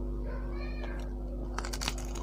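A crisp bite into a fried samosa near the end, a quick cluster of crackly crunches. Before it comes a brief high-pitched wavering call.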